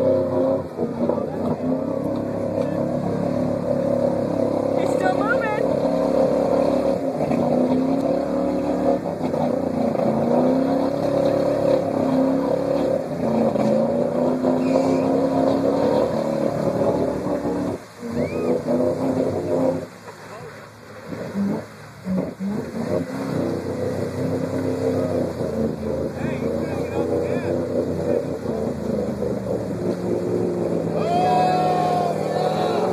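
Chevy Blazer engine revving in repeated rising surges as it labours through deep, sticky creek mud and water. About two-thirds of the way through, the revs drop away briefly, then the engine picks up and pushes on again.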